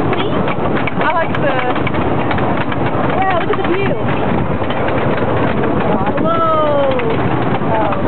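Wooden roller coaster train rattling and clattering over the crest of the lift hill and down the first drop, with wind buffeting the microphone. About six seconds in, riders let out long screams that fall in pitch.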